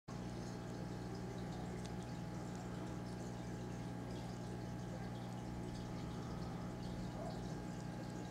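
Faint steady low hum with light trickling and dripping water in a fish tank.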